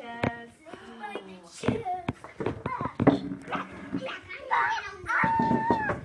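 Young children's voices and chatter in a small room, with several sharp knocks. Near the end one voice holds a single high note for under a second.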